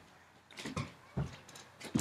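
Bare feet landing on a hardwood floor during side-to-side ski-jump hops: about four soft thuds at uneven intervals.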